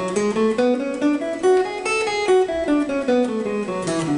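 Guitar playing a major scale one plucked note at a time, climbing step by step to its top note about two seconds in, then coming back down at an even pace.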